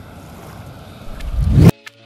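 Wind buffeting the microphone over outdoor shoreline ambience, swelling into a loud low rumble that cuts off abruptly near the end. Music with a ticking beat starts right after.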